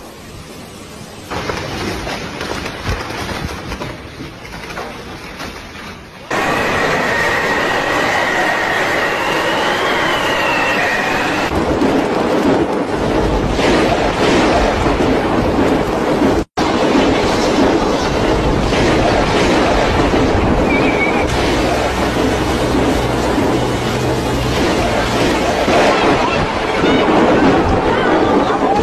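Typhoon wind and heavy rain blowing and pouring, loud and steady, changing abruptly several times as separate clips cut in. A steady high whistling tone runs for about five seconds in the first third, and there is a split-second dropout about halfway.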